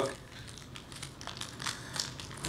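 Quiet rustling and crinkling of anti-tarnish wrapping paper being peeled off a cast-iron hand plane, with a few small crackles.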